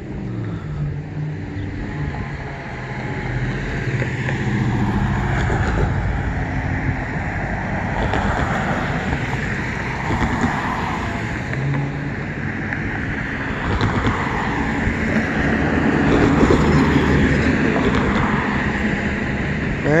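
Cars driving past and over the railroad crossing: a continuous run of engine and tyre noise that grows louder a few seconds in and holds.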